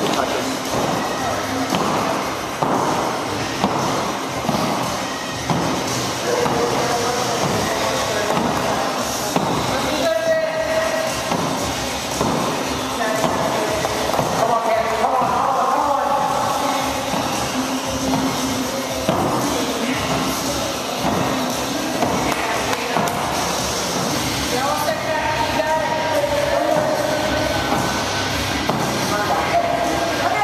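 Heavy battle ropes whipping and slapping against a wooden gym floor over and over, with music playing in the background.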